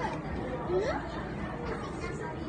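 Indistinct chatter of several voices talking, with a couple of short rising vocal sounds, over a steady low background hum.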